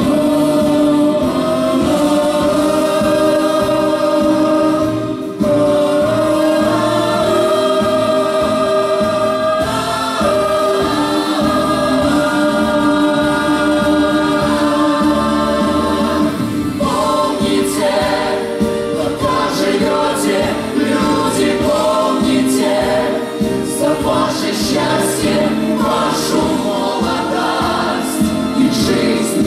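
A mixed vocal ensemble of men and women singing a song in harmony through microphones. The first half holds long, sustained chords, and the second half moves into a quicker, more rhythmic passage.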